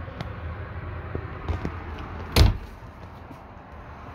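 A single loud, dull thump about two and a half seconds in, over a steady low hum, with a few faint clicks before it.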